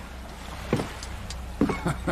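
Riverside ambience: a low steady rumble with a few short knocks and creaks of moored wooden boats. There is one knock about three-quarters of a second in and a quick cluster near the end.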